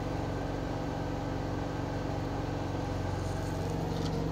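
Semi truck's diesel engine idling, heard from inside the cab: a steady low hum.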